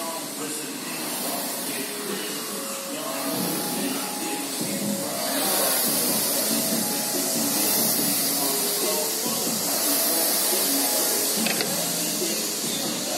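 Concept2 rowing machine's air flywheel whooshing with each hard stroke, about one surge every two seconds, louder from about five seconds in. Gym background music and chatter run underneath.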